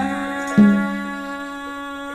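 Sundanese jaipong gamelan music played live, with held tones throughout. One loud struck note sounds about half a second in and rings, slowly fading.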